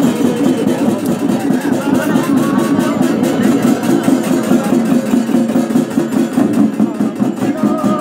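Shamans' ritual music: a rapid, steady beating on a frame drum with metallic jingling over it, running without a pause.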